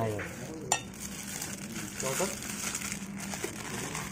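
A plastic spoon stirring and turning chopped lemongrass and pieces of meat in a metal pot, a steady rustling and scraping, with one sharp knock of the spoon about three-quarters of a second in.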